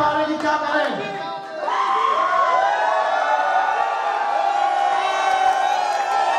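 Arena crowd cheering and shouting, many voices overlapping. It dips briefly about a second and a half in, then swells into a thick, sustained roar of voices.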